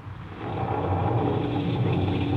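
Radio sound effect of an approaching summer storm: a low thunder rumble that swells during the first second and then holds steady. It is heard through the narrow, muffled sound of a 1940s broadcast recording.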